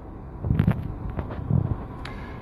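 Phone microphone handling noise: two low rumbling bumps about a second apart as the hand-held phone is moved, over a steady low cockpit background hum.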